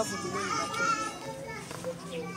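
Background voices of children playing, under soft background music.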